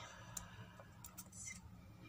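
Quiet room tone with a few faint clicks, one early and three close together about a second in, then a brief soft rustle, as a small folded paper chit is handled.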